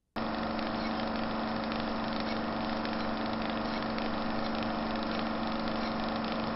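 A steady, even machine-like drone that starts abruptly: a low hum with hiss above it, like an engine idling.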